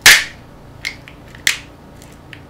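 Sharp snaps and clicks of a small Sony MP3 player's casing being pried apart by hand. There is one loud snap at the start, then two smaller clicks a little under a second and about a second and a half in.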